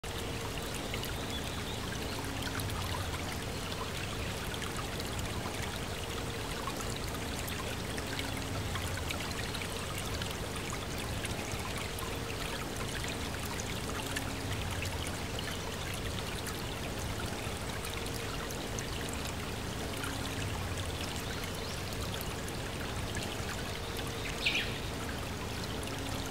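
Steady running water, trickling evenly, with faint low tones swelling and fading every few seconds and a brief high sound near the end.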